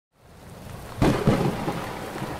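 Steady rain fading in from silence, with a low rumble of thunder about a second in.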